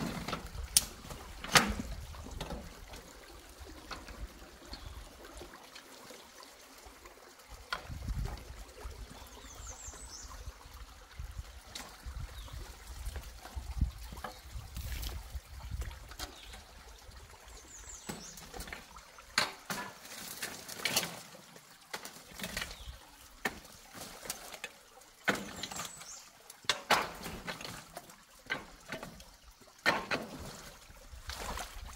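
Water sloshing and trickling around a person wading at a culvert mouth while sticks are raked out of a beaver-dam clog, with irregular sharp knocks and clatters of wood and the rake.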